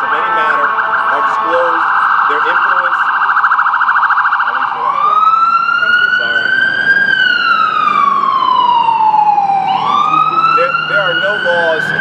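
Emergency vehicle siren sounding a fast yelp, switching about five seconds in to a slow wail that rises, falls over a few seconds and rises again.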